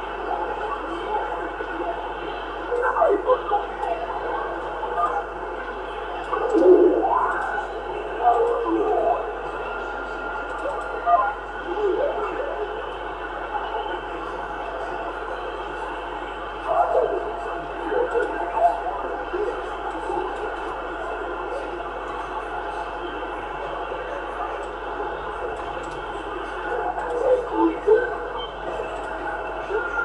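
A Yaesu FT-450 transceiver tuned to CB channel 27.185 MHz is receiving. Faint, hard-to-make-out voices from stations on the band come and go through a steady radio hiss.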